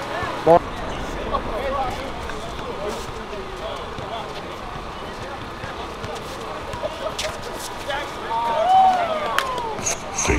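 Pickup basketball game: scattered shouts and chatter from players and spectators over steady background noise, with a few sharp knocks of the ball on the court.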